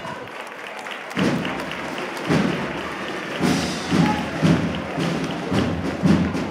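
A processional band starts playing a march about a second in, with heavy bass-drum beats and low sustained band notes.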